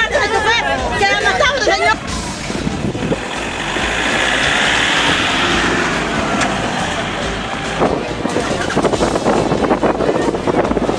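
A voice crying out for about two seconds, then a vehicle, likely a pickup truck, driving close by: a rushing noise that swells and fades over several seconds. Clicks and crowd voices come near the end.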